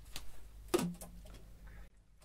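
Faint handling noise and a few light clicks as a baritone saxophone is raised to the mouth, with a short low tone just under a second in. The sound cuts off abruptly to silence near the end.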